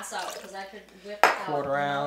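Glassware and bar tools clinking on a counter while a cocktail is being made, with one sharp clink a little over a second in.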